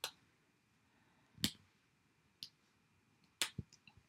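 Faint hand-handling sounds of paper and thread on a tabletop: a few scattered light clicks and taps as linen thread is looped around a paper piece and pressed onto a card, with a small cluster of clicks near the end.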